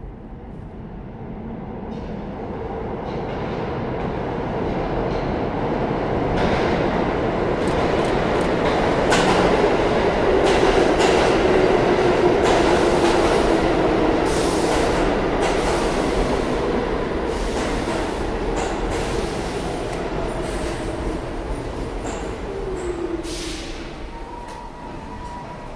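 New York City subway train pulling into an underground station: a rising rumble with wheels clacking over rail joints, loudest about halfway through as the cars pass, then easing as the train slows, with a motor whine falling in pitch.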